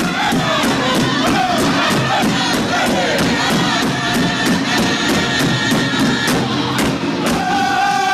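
Powwow drum group singing in full voice while beating a large shared drum with sticks in an even beat of about three strikes a second. The drumbeat stops about seven seconds in, and the singing carries on.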